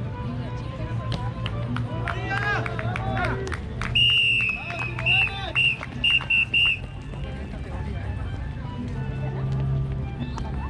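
Shouted encouragement from trackside voices, then a high shrill whistle: one longer blast about four seconds in, followed by a string of short blasts, as runners pass on the track.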